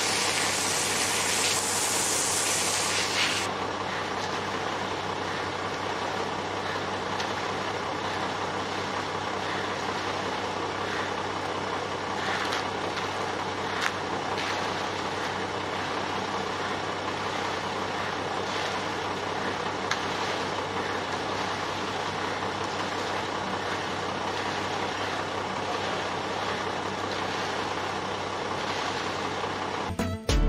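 A truck engine running steadily at idle. A loud hiss sounds over it for the first few seconds and then cuts off, and there are a few faint scrapes of hand tools in wet concrete.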